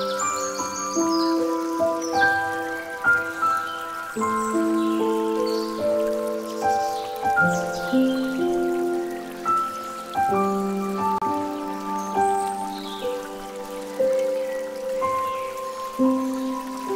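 Calm instrumental music of slow, held notes over the steady trickle of water pouring from a bamboo fountain spout into a pool.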